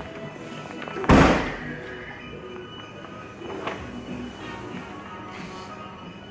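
Background music playing, with one loud, heavy thump about a second in as the BMW convertible's boot lid is shut.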